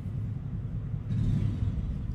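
A low rumble of background noise, with a faint hiss joining about a second in.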